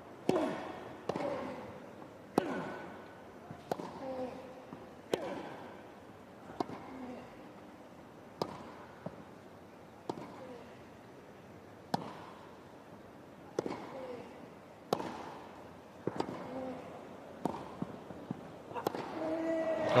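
Tennis balls struck back and forth by rackets in a long baseline rally on a grass court: a sharp pock about every one and a half seconds, alternating between the two players.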